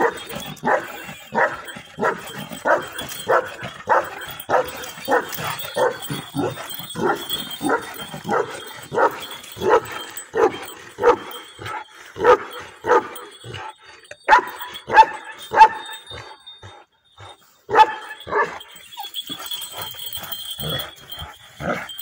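A large fawn, black-masked shepherd dog barking at a newly arrived dog it has taken against, in a steady run of about two barks a second, with a short break about three-quarters of the way through and then a few more barks.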